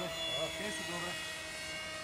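Motor and propeller of a plank-type RC flying wing giving a steady, even-pitched whine as the model flies low and fast.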